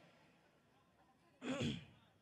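Near silence, then about one and a half seconds in a single short breath or sigh from a woman speaking close to a microphone, between phrases.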